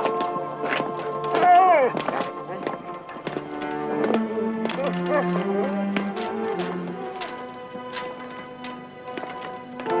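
Film score music with long held notes. About one and a half seconds in, a dog gives a whine that bends and falls in pitch, as it is led on a leash to a sacrificial altar.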